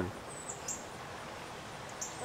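Steady rush of a flowing river, with two short high bird chirps about half a second in.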